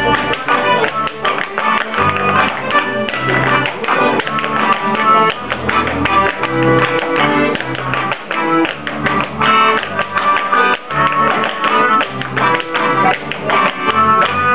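Clog dancers' clogs rapidly tapping and clattering on a wooden floor in rhythm with an accordion playing a traditional folk dance tune.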